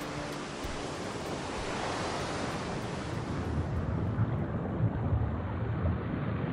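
A rushing noise like ocean surf or wind, used as a sound effect between tracks of an electronic chill-out mix. Its hiss is brightest about two seconds in and thins away after about four seconds, while a low rumble swells toward the end.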